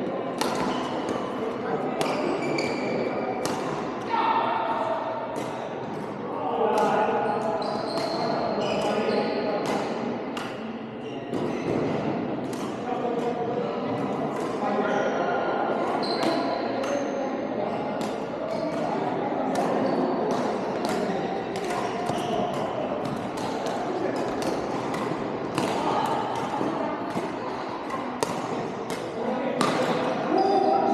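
Badminton racket strings hitting the shuttlecock again and again, many sharp irregular hits from rallies across several courts, echoing in a large sports hall over indistinct players' voices.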